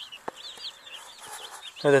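A brood of baby Cornish Cross broiler chickens peeping, many short high chirps overlapping without a break.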